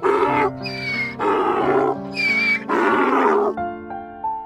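Donkey braying: a run of loud, rough hee-haw breaths, each under a second, that stops about three and a half seconds in. Steady background music plays underneath.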